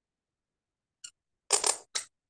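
Cut reed pen (qalam) nib scratching across paper while a letter is being drawn: a brief tick about a second in, then a longer scratch in two pulses and a short one near the end.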